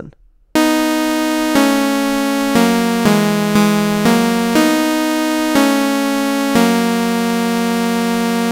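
Synthesizer (Ableton's Wavetable) playing a short melody together with a harmony line shifted straight up a third, in steady held notes that change about once a second, a little faster in the middle. Moved up unchanged, some harmony notes fall outside the key of A major and clash: "terrible".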